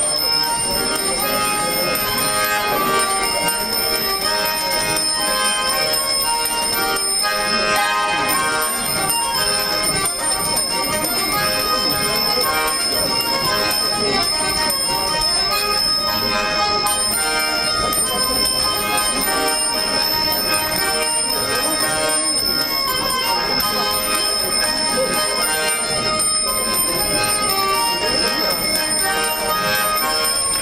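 Saratov garmon, a Russian button accordion with small bells fitted to its cases, played solo: a continuous tune of held chords and melody, its bells ringing along as the bellows move.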